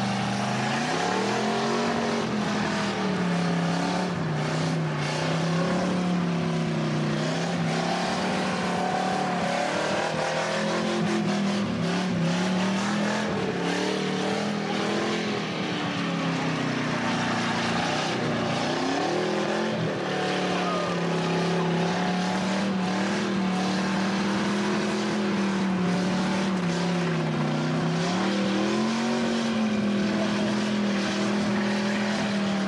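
Car engine held at high revs through a burnout, its pitch rising and falling again and again as the throttle is worked, over the rushing noise of spinning tyres.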